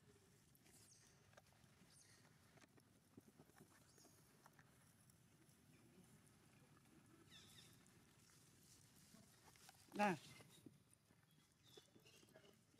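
Near silence: faint outdoor background with scattered light clicks and rustles, then a short voice, "yeah, huh?", near the end.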